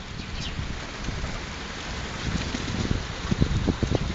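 Wind rumbling on the microphone over a steady outdoor hiss, with stronger gusts from about two seconds in.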